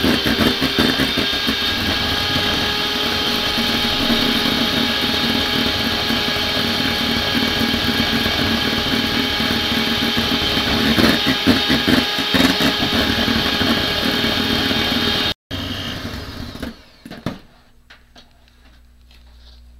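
Electric hand mixer running at a steady speed, its twin beaters whipping egg whites and sugar into meringue in a stainless steel bowl. The whir cuts off suddenly about fifteen seconds in, followed by a quieter stretch with a couple of knocks near the end.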